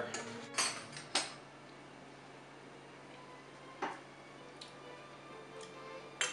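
A few sharp clinks of a metal whisk and spoon against a stainless steel mixing bowl and small dishes, with quiet stretches between them.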